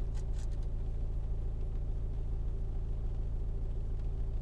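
A car engine idling, heard from inside the cabin as a steady low hum. A few faint clicks in the first half second come as the phone is set into the gravity vent mount.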